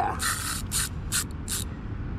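Spinning-reel drag ratchet of an NGT Camo40 baitrunner reel buzzing in four short bursts as a hooked fish pulls line off against the drag.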